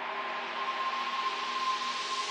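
White-noise riser sound effect playing: a steady hiss that slowly gets brighter, with a faint steady tone running through it.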